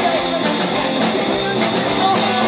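Live rock and roll band playing: a woman singing over electric guitar, bass and drums.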